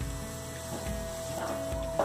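Chopped garlic sizzling gently in olive oil in a wok, a soft steady hiss. Background music with one long held note plays over it.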